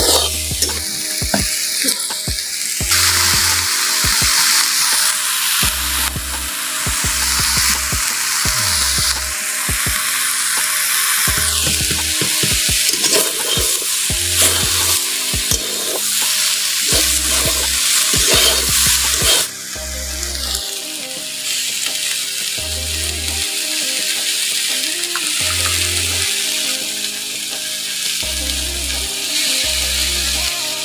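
Raw banana chunks sizzling as they fry in a metal kadhai, stirred with a metal spatula that clicks and scrapes against the pan.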